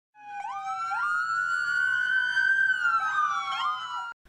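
Siren-like logo sting: several synthesized tones that slide up in quick steps at the start, hold, and slide back down near the end.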